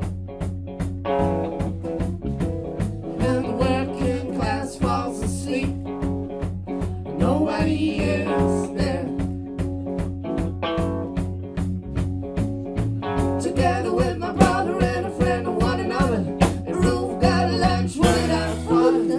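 Live band playing an instrumental passage: electric and acoustic guitars over a steady drum beat of about three strokes a second.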